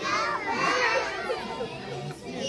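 A group of young children calling out together in high voices, loudest in the first second.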